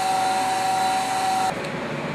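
Electric fuel filler pump running steadily with a constant tone, pumping biodiesel through a hose and nozzle into a barrel. It cuts off suddenly about one and a half seconds in, leaving quieter room sound.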